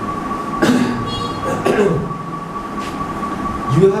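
Steady room noise with a constant high-pitched whine, a few brief faint voice sounds, and a man's cough near the end.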